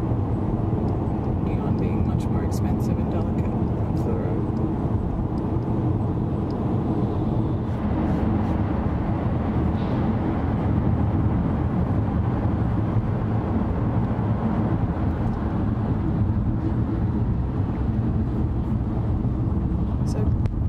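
Steady road noise inside a moving car at highway speed: a low, even rumble of engine and tyres.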